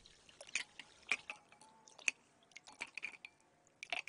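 Faint, scattered drips, small splashes and soft wet clicks of a carburetor body being rinsed and moved about in a bowl of water.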